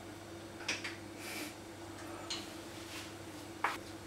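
A small spoon stirring chia pudding in a glass, with a few faint taps and scrapes against the glass; the sharpest tap comes near the end. A steady low hum runs underneath.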